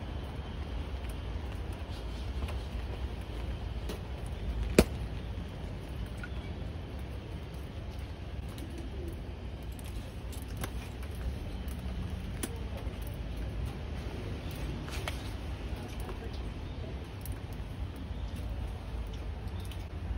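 Footsteps on stone stairs over a low, steady rumble, with one sharp knock about five seconds in that is the loudest sound. A bird coos faintly in the background.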